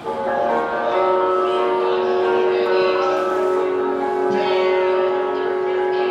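Live rock band coming in loud and all at once with sustained, bell-like chords, one long note held through most of it.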